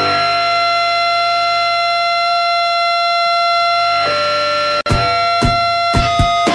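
Live punk band: a steady, high ringing tone, typical of electric guitar feedback, held for several seconds. It cuts off suddenly near the end and gives way to a few sharp stabs from the full band.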